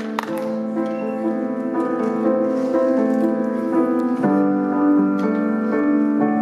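Solo piano playing a slow introduction of sustained chords, with a chord change about four seconds in. A few last claps of applause die away just as it begins.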